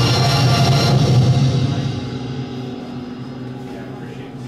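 Band music ending on a full held chord that dies away from about a second in, fading steadily through the rest.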